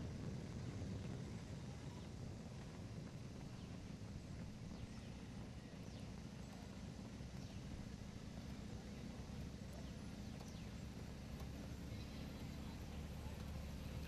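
Steady low rumble of a moving vehicle and road noise outdoors, with faint scattered ticks.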